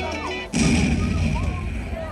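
Dance-show music over the PA speakers, broken about half a second in by a sudden loud explosion-like hit whose noise fades away over the next second or so.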